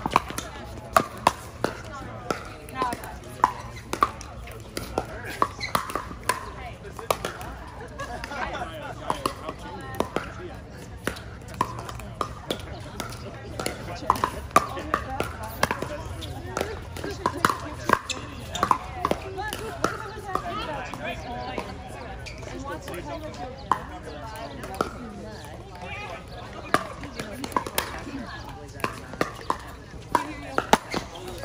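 Pickleball paddles hitting the plastic ball: sharp pops at irregular intervals, often several in quick succession during rallies, some from neighbouring courts.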